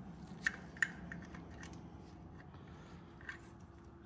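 A few light metallic clicks as hands work the rocker arm and adjustable checking pushrod on an LS cylinder head, two close together about half a second in and a fainter one past three seconds, over a faint steady background hum.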